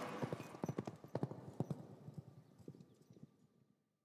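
A quick run of faint clip-clop knocks at uneven spacing, growing weaker until they die out about three seconds in.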